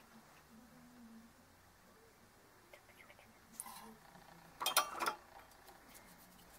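Soldering tools handled over a circuit board on a wooden table: a few light clicks, then a brief, louder clatter of hard tool bodies just before five seconds in.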